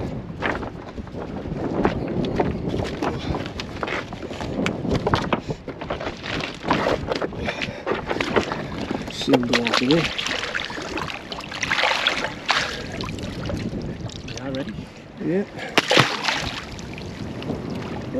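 Shallow seawater splashing and sloshing at the shoreline as a caught fish is let go into the water, with wind on the microphone.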